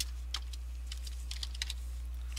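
Computer keyboard keys tapped a few times in an irregular scatter, most of the taps bunched together about halfway through, over a steady low electrical hum.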